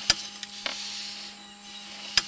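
Sewer inspection camera's push cable being pulled back out of the line: a steady rubbing hiss with a sharp click just after the start and a softer knock about two-thirds of a second in, over a steady electrical hum.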